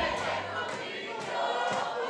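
A quieter stretch of live Greek folk music between sung lines: plucked lutes play softly, with faint voices singing.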